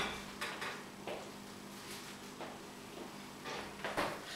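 Refrigerator door being opened and shut, with a few faint clicks and knocks as the bag is put inside, the loudest knock near the end, over a low steady hum.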